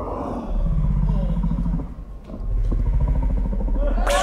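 A man's voice, indistinct, through an outdoor press-conference lectern microphone, over a heavy, steady low rumble. The voice drops out briefly about halfway through.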